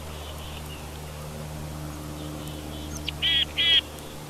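A bird gives two loud, harsh calls in quick succession near the end, after a few faint chirps, over a steady low hum.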